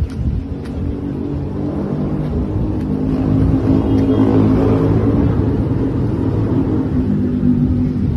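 A motor vehicle's engine running close by, a low steady hum that swells louder toward the middle.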